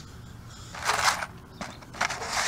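A paper plate of coins being handled in a plastic pan: a short burst of rustling and scraping about a second in, then a few light clicks.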